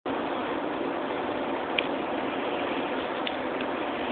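Steady road and wind noise heard inside the cabin of a moving car, with two faint ticks.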